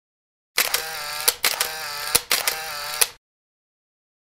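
Camera shutter and motor-wind sound, three times in quick succession: each a sharp shutter click, a short whirr that wavers in pitch, and a closing click.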